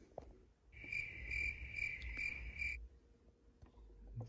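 Loud cricket chirping: a high, pulsing trill of about three chirps a second that starts just under a second in and stops after about two seconds.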